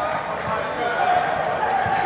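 Players' voices shouting and calling across a large indoor football hall, with a few short low thuds under them.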